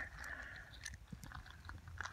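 Faint, scattered small clicks and crunches of creek gravel and stones being disturbed.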